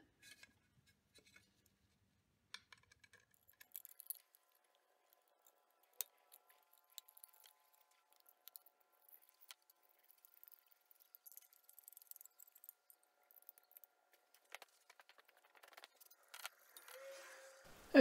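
Faint, scattered metallic clicks and clinks of hand tools and stainless steel bolts as an aluminium plate is bolted onto a motorcycle swing arm, with a faint steady hum through the middle.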